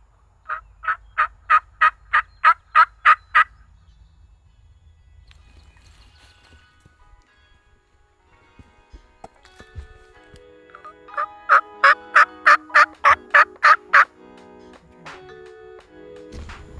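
Turkey call worked in two series of hen yelps, about three evenly spaced yelps a second, near the start and again near the end, calling to get a gobbler to answer. Soft background music comes in under the second series.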